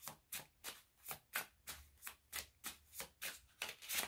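A deck of reading cards shuffled by hand: a steady run of quick card strokes, about three to four a second.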